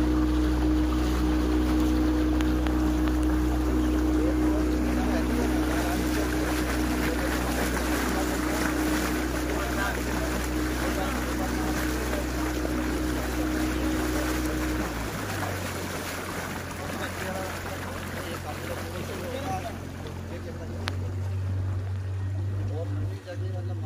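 Motorboat engine running steadily under way, with water rushing along the hull and wind on the microphone. About fifteen seconds in, the engine note changes and settles on a different steady pitch, slightly quieter.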